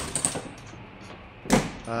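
Trailer boat tail, a folding aerodynamic rear panel, being pushed shut: one sharp snap about one and a half seconds in as it latches at the bottom.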